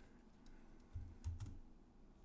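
A few faint taps on a computer keyboard, most of them bunched about a second in, some with a soft low thump.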